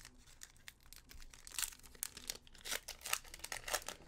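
Foil Pokémon booster pack wrapper crinkling and tearing as it is opened by hand: a quick run of small crackles, busier in the second half.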